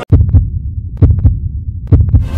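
Deep, heartbeat-like thumps in pairs, about once a second, over a steady low rumble: the bass sound design of an advert's animated logo intro.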